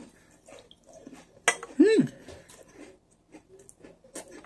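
Close-up eating of an Oreo sandwich cookie: a sharp crunch about a second and a half in, then a short hummed "mm" that rises and falls, and soft chewing after it.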